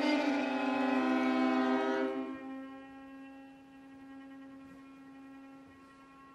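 String ensemble holding a loud, dense sustained chord that breaks off about two seconds in, leaving a single quiet bowed note held steadily at one pitch.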